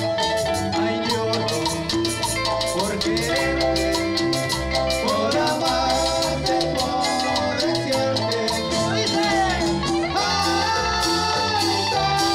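Cumbia band music in the Peruvian chicha style: timbales and cowbell keep a fast steady beat under electric guitars and keyboard, with a melody line that bends up and down in pitch.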